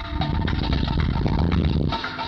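A fast, dense drum roll within live music. It swells slightly and breaks off near the end, while the band's held notes carry on faintly above it.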